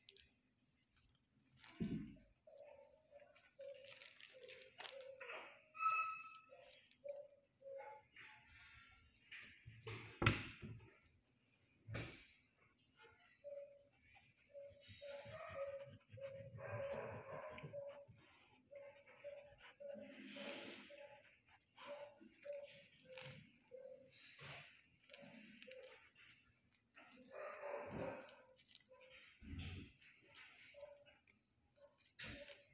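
Kennel hubbub: other dogs in the shelter barking, muffled and at a distance, short barks repeating irregularly throughout, with a few sharp knocks.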